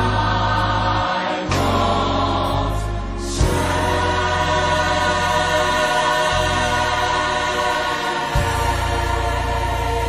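Gospel choir holding long sustained chords over a band accompaniment, with the bass note changing every two to three seconds and a sharp accent hit twice.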